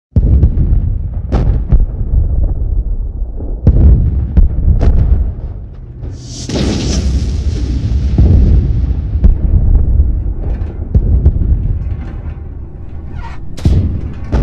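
Cinematic trailer-style intro music with deep rumbling bass and several heavy booming hits in the first five seconds. About six seconds in comes a sudden hissing whoosh that fades away over a few seconds.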